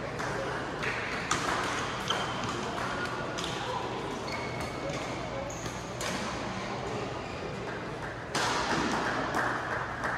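Badminton hall sounds: sharp racket-on-shuttlecock hits and short shoe squeaks on the court floor, over a background of people talking in a large echoing hall.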